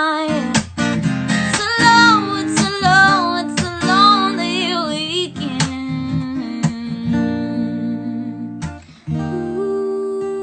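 Acoustic guitar strummed under a woman singing, her voice sliding through wavering runs in the first half. The rest is mostly steady strummed chords, with a brief break near the end before a chord rings on.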